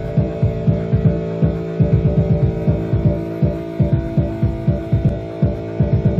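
Live band music: a steady synthesizer drone is held over a fast, pulsing bass line, about four or five beats a second.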